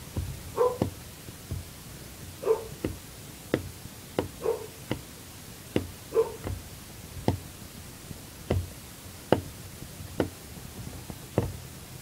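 Irregular sharp knocks and clicks of a laptop and tools being handled on a desk, with four short pitched sounds in the first half.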